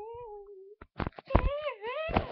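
A child's voice drawing out "TV" in a wavering sing-song, then several sharp knocks and a higher wavering cry that dips and rises again.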